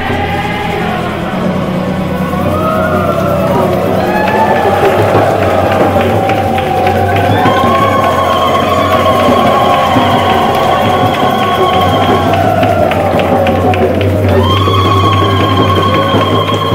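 A group singing a Native American power song in unison with guitar accompaniment. A long high note is held near the middle and again near the end.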